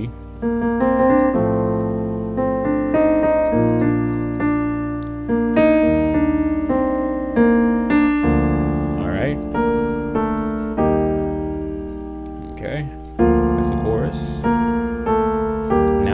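Piano playing slow sustained block chords in B-flat major, starting on an E-flat major chord over G, with a new chord struck about every one to one and a half seconds and each ringing and fading before the next.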